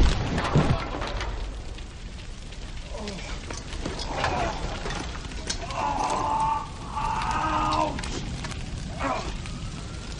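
A heavy thud at the very start as a large man's body lands on a firefighter on the floor, then a low, steady background of burning, with two drawn-out groans around six and seven seconds in.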